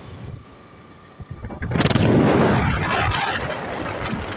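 Road noise heard from on board a moving vehicle. About two seconds in, a loud rushing noise swells up suddenly, then slowly eases off.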